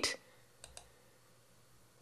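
Two faint computer-mouse clicks in quick succession about two-thirds of a second in, against near silence.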